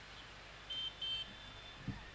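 Two short high-pitched electronic beeps in quick succession about a second in, followed by a brief low thump near the end.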